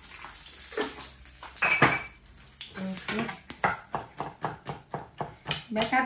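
Large kitchen knife chopping on a wooden cutting board in quick, regular strokes, about four a second, from about three seconds in. Before that, hot oil sizzles in a pan and a metal pan or utensil clanks once, loudly.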